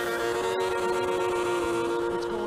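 Intro sound effect: a held electronic chord of several steady tones over static hiss, with a sharp click about half a second in.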